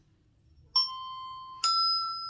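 Two ringing glockenspiel notes struck about a second apart, the first about three-quarters of a second in and the second a step higher, the start of a rising run of notes.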